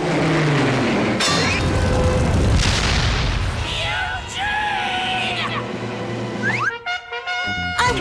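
Cartoon explosion sound effects as flaming lava balls fly and crash: a long noisy blast with a falling whistle at the start, mixed with background music that ends on a short musical sting near the end.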